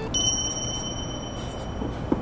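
An edited-in bell 'ding' sound effect: one high chime that starts just after the beginning, rings steadily for about a second and a half and then cuts off.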